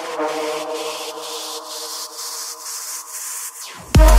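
Techno track in a breakdown: the kick and bass drop out, leaving a sustained synth chord, a steady pulse in the high end and a swelling hiss that builds toward the drop. Just before the end the sound dips briefly, then the full kick and bass come back in.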